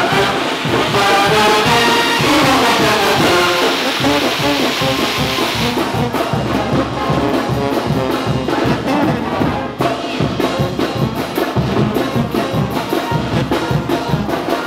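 A Mexican brass banda playing: trumpets, trombones and sousaphones over bass drum and cymbals. For about the first six seconds a fountain firework sprays sparks with a steady hiss that cuts off suddenly, after which the drum strokes stand out more sharply.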